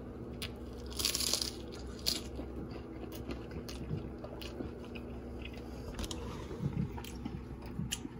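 A bite into a crisp, pan-toasted chicken quesadilla, with one loud crunch of the crust about a second in, then quiet chewing.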